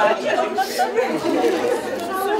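Chatter of several people talking over one another, the words indistinct.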